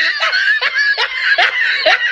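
A person laughing in a run of high-pitched bursts, about two or three a second.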